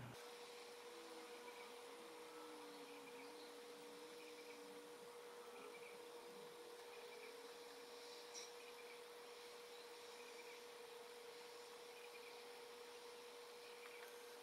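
Near silence: faint room tone with a thin, steady hum, and a single faint tick about eight seconds in.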